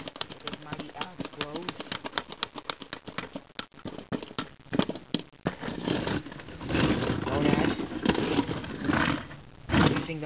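Hand-pushed Lego robots clattering on a wooden floor: a rapid run of small plastic clicks and rattles from bricks and wheels for about the first five seconds. The second half is louder and denser scraping, mixed with a child's wordless vocal noises.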